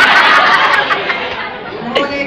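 Many overlapping young voices of an audience chattering at once, loudest in the first second with a few sharp snaps mixed in, then thinning out.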